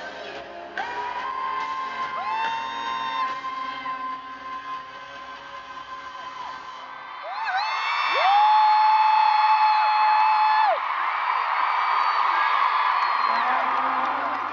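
Live pop ballad ending: a woman's voice holds long sung notes over piano chords. The piano drops out, one loud final note is held for about three seconds as the crowd's cheering and whoops swell, and the cheering carries on after it.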